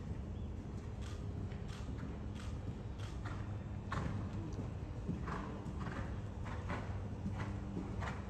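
A horse's hoofbeats in canter on sand arena footing, a soft beat about every two-thirds of a second that is clearer in the second half, over a steady low hum.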